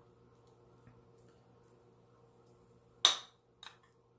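A metal spoon clinks sharply once against a ceramic plate about three seconds in, then taps it again more lightly, as chopped ham is scraped off into a mixing bowl. Otherwise quiet room tone with a faint steady hum.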